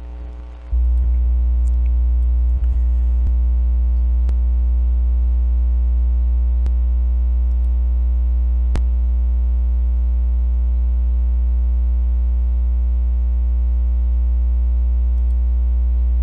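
Loud, steady electrical hum with a buzz of many even overtones, typical of mains hum in the recording chain. It jumps louder just under a second in and then holds steady, with a few faint clicks along the way.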